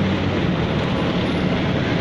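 A steady engine hum under a haze of street noise.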